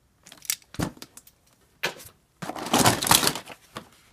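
Diecast toy cars clicking against one another as a hand digs through a cardboard box full of them: a few sharp clicks in the first two seconds, then a louder stretch of rustling and clattering as a carded car in its plastic blister pack is pulled out.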